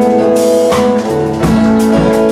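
Live country-roots band playing an instrumental passage: electric and acoustic guitars over bass and a drum kit keeping a steady beat with cymbals.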